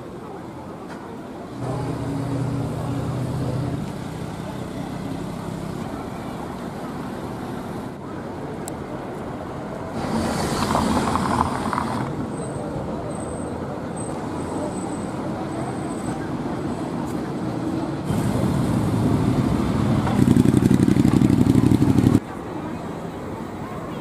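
Town street ambience: motor vehicles running and passing, with passers-by talking in the background. An engine hum is loudest near the end.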